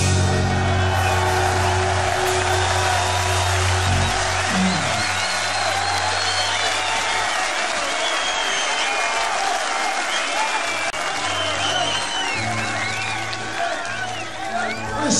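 A rock band's last chord held and ringing for about four seconds, then stopping, under a large crowd cheering, clapping and whistling. Low held notes from the band come back near the end.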